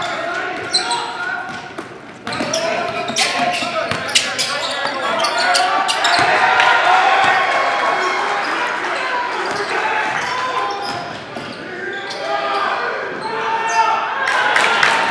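Live court sound of a basketball game in a gym: the ball bouncing on the hardwood, shoe squeaks and players' and spectators' voices ringing in the hall.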